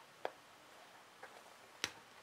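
Faint handling of fabric pieces with a pin at the seam: three small clicks, the sharpest near the end, over quiet room tone.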